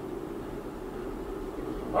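Steady road and tyre noise inside the cabin of a Tesla electric car driving at city speed, with no engine sound.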